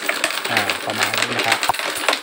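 Thai baht coins clinking against each other and the clear plastic rotating hopper bowl of a homemade automatic coin counter as a hand stirs them loose, in a rapid, continuous clatter of small clicks.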